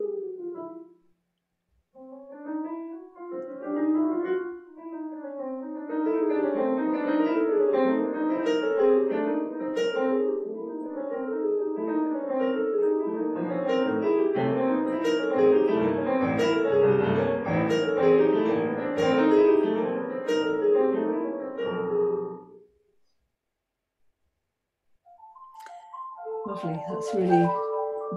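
Two pianos improvising together, a teacher and a primary-school pupil. After a lone note and a short pause, sparse notes build into busy, overlapping rising and falling runs, then stop about 22 seconds in.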